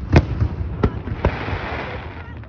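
Aerial firework shells bursting: a loud bang right at the start, then two smaller bangs around one second in, followed by a dense crackle as the burst's sparks break up.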